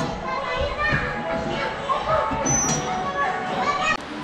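Young children's voices calling and chattering together as they play, high-pitched and overlapping.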